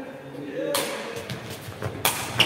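A sepak takraw ball is kicked about three quarters of a second in: a sharp smack that echoes through the sports hall, followed by a few lighter knocks. Faint voices can be heard before it.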